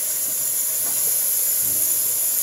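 Steady hiss of tap water running into a kitchen sink while dishes are washed.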